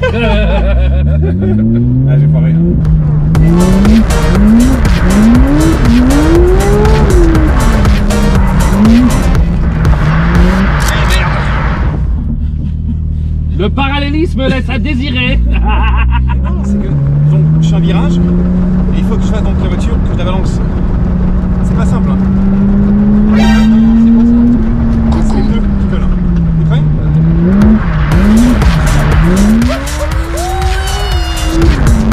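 Porsche 992 GT3 RS's naturally aspirated flat-six heard from inside the cabin, revved up and down hard again and again as the car is slid around, with tyre squeal in the first part. Near the middle the revs drop briefly, then hold high and steady for several seconds before dipping and climbing again near the end.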